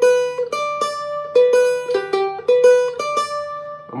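Rozini student-model cavaquinho, single notes plucked one after another, about a dozen, alternating between a few pitches. A fretted note is being compared against the neighbouring open string to check that the strings are in tune with each other.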